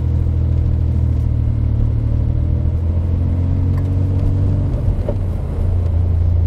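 DeLorean DMC-12's 2.85-litre PRV V6 engine running under way, heard from inside the cabin as a steady low hum. Its note rises slowly, dips briefly about five seconds in, then runs on steadily.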